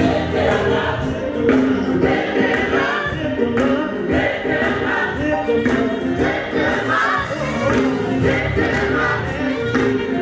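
Gospel mass choir singing full-voiced in harmony, backed by a live band of Hammond-style organ, drums, bass and piano with a steady beat.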